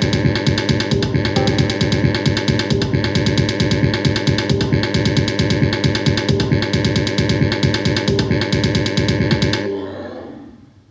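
Korg Volca Sample sample sequencer playing a dense, steadily repeating electronic beat loop. It stops just before the end and the sound dies away.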